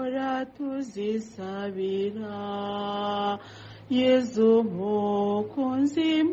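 A woman singing a slow, chant-like hymn, holding long notes, with a short break about halfway through.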